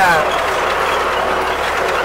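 Tractor engine running steadily under load in the field, heard from inside the cab, with a CLAAS 46 round baler working behind it; a steady, even noise.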